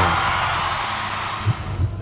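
A crash-like whoosh sound effect for a TV logo transition, fading out over about two seconds.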